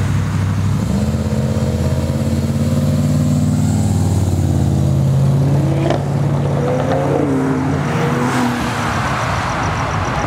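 Car engine and exhaust running loud as a car drives past, holding a steady note, then rising in pitch about six to seven seconds in as it accelerates away.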